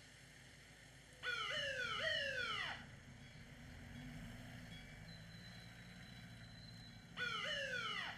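Police vehicle siren going off in two short bursts, each a quick run of sharply rising, falling whoops, the first about a second in and the second near the end, over a low background rumble.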